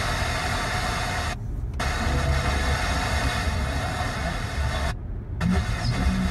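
Car FM radio being stepped up the dial between stations: static hiss from the speakers that cuts out briefly twice as the tuner jumps to the next frequency. A low car engine rumble runs underneath.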